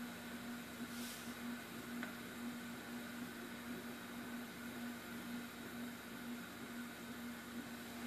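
Quiet room tone: a steady low hum over faint hiss, with a faint tick about a second in.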